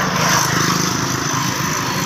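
Small motorcycle engine running steadily under way, with a rush of air noise over it.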